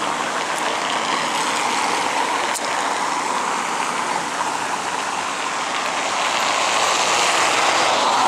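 City street traffic: a steady hiss of tyres and engines, with a car driving past close by on the stone-block paved road.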